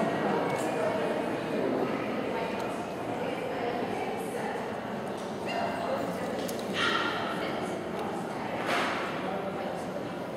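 Indistinct background chatter in a large hall, with a dog barking a few times, most clearly about two-thirds of the way through and again near the end.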